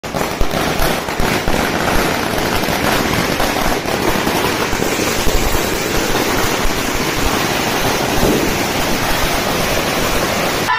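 A long Diwali chain of small firecrackers (a 'wala' string of thousands) bursting in a continuous, rapid crackle of bangs far too quick to count, loud and unbroken.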